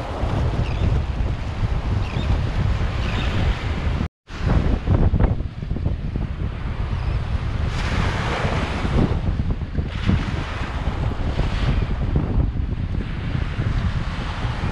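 Small sea waves breaking and washing up on a sandy beach, with wind buffeting the microphone. The sound cuts out for a moment about four seconds in, then the surf swells louder a few times.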